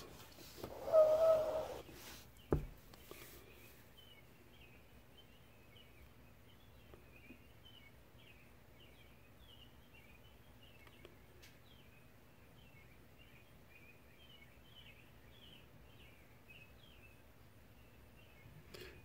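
Faint small-bird chirping, short calls repeating over quiet room tone. Near the start there is a brief steady tone, then a single click.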